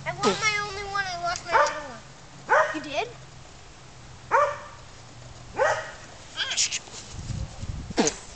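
Five loud, high vocal yelps. The first is longer and wavers in pitch, and the four short ones that follow each fall in pitch.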